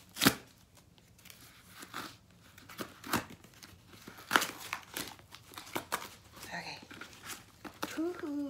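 Cardboard box being torn open by hand: a series of short, sharp rips and crinkles, the loudest just after the start.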